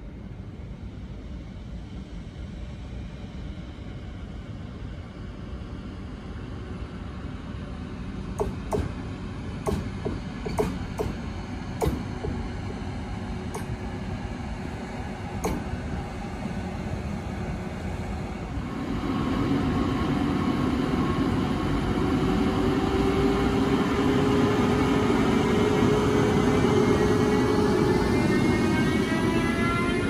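Siemens Vectron electric locomotive running with a low rumble, its wheels giving a series of sharp clicks over the rail joints partway through. Then it gets louder, with the typical whine of its traction motors in several tones rising together in pitch as it accelerates with its train.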